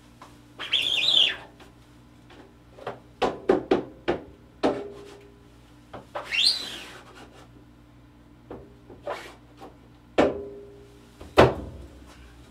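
Rubber squeegee dragged across an inked silkscreen mesh in two strokes about five seconds apart, each a squeak that rises and falls in pitch, with knocks and clacks of the squeegee and the wooden screen frame on the print table; the loudest knock comes near the end.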